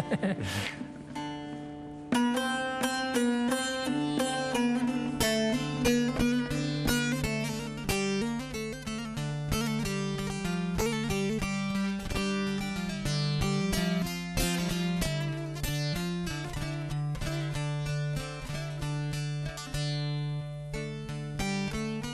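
Bağlama (Turkish long-necked saz) played solo: a fast plucked melody ringing over a steady low drone string. It starts softly and picks up into dense, continuous picking about two seconds in.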